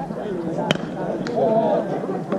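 Softball bat striking the ball once, a sharp crack about two-thirds of a second in, with a fainter click half a second later, over voices chattering and calling.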